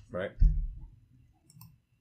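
A single sharp computer mouse click about a second and a half in, clicking the preview button so the edited model re-renders. A short low thump comes near half a second.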